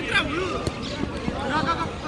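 Football players shouting to each other, with a few dull thuds of a football being kicked.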